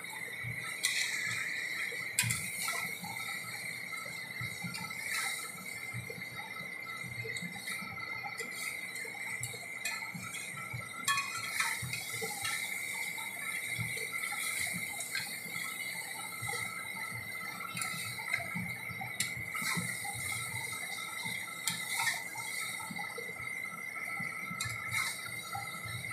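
Chicken and potato curry sizzling in a metal karahi on a gas burner while a spatula stirs it, with scattered scrapes and taps of the spatula against the pan. A steady high tone runs throughout.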